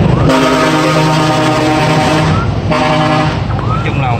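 A vehicle horn sounding twice: one steady blast of about two seconds, then a short toot after a brief gap.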